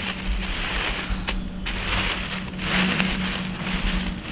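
Thin plastic shopping bag rustling and crinkling as a potted seedling is worked out of it by hand, with a brief lull about a second and a half in. A faint steady low hum runs underneath.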